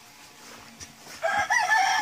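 A rooster crowing: one long call that starts a little over a second in.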